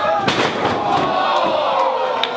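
A wrestler landing hard on his opponent and the ring canvas, a single slam about a third of a second in, followed by the crowd yelling.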